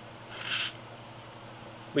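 A short hissing breath about half a second in, over a faint steady hum.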